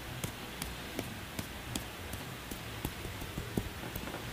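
Light, quick taps of hands patting on the feet in percussion massage, an even on-off rhythm of about three taps a second.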